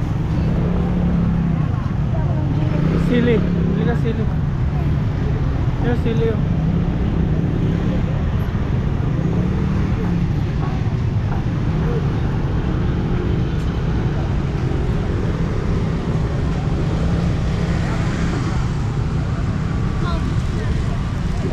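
Street-market ambience: a steady low rumble of road traffic and passing scooters, with indistinct voices of people nearby.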